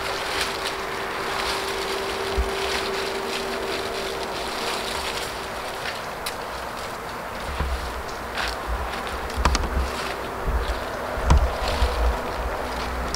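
Outdoor background noise with a steady hiss, and wind buffeting the microphone in low gusts from about halfway on. A few faint sharp knocks come through, from the compost being worked with a fork at the bin.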